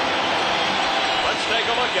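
Large stadium crowd cheering steadily as an inning-ending out is made. A man's voice starts near the end.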